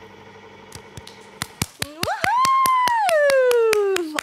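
One person clapping quickly and steadily, starting about a second in. From about two seconds in, a high, drawn-out "woo" cheer rises, holds, and then slowly slides down in pitch.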